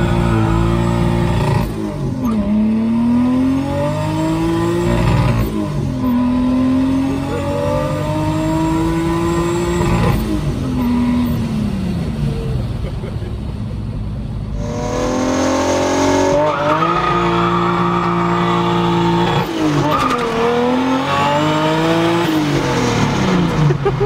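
Toyota Hilux's big-turbo 2JZ-GTE straight-six heard from inside the cab, pulling hard under acceleration. The engine note climbs and then drops sharply at each upshift, several times over, easing off for a couple of seconds about halfway through before pulling hard again.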